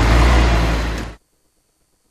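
Articulated city bus driving past close by: a steady low engine rumble with road noise, which cuts off suddenly a little over a second in.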